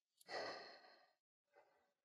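A person's breath, heard close to the microphone: one soft breath lasting about a second, then a shorter, fainter one.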